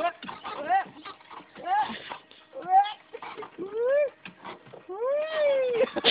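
Playground nest swing squeaking on its chains as it swings: a rising-then-falling squeal about once a second, five times, each one longer than the last.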